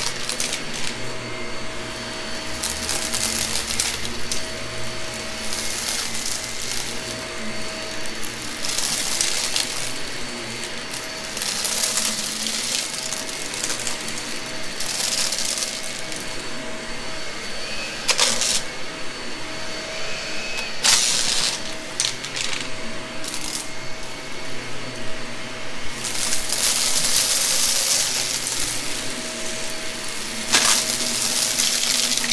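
Shark vacuum cleaner running steadily, with repeated bursts of rattling hiss as loose mess-test debris is sucked up; the longest burst comes near the end.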